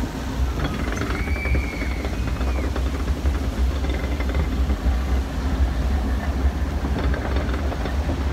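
Log flume boat being carried up the lift hill: a steady mechanical rumble and rattle from the lift conveyor. A faint high squeal comes in briefly about a second in.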